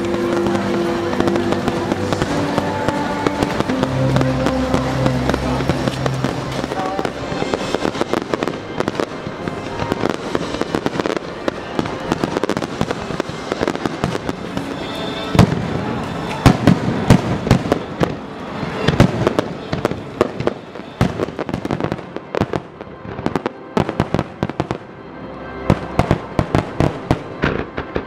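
Fireworks display: aerial shells bursting with sharp bangs and crackling. The bursts grow denser after the first several seconds, the heaviest volley comes in the middle, and a rapid run of crackles follows near the end. Music with held notes plays over the opening seconds.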